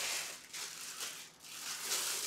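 Clear plastic wrapping rustling and crinkling as it is handled, in irregular uneven bursts.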